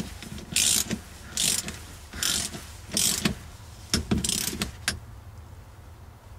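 Ratchet wrench clicking in about five short strokes, roughly one a second, tightening the upper nut of a rear shock absorber before torquing it to 15 foot-pounds; the strokes stop a little after four seconds.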